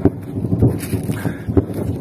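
Footsteps on snowy, muddy ground as the person filming walks, with a few dull thuds.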